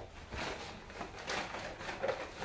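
Plastic wrapping crinkling in a few short rustling bursts as a shrink-wrapped package is handled.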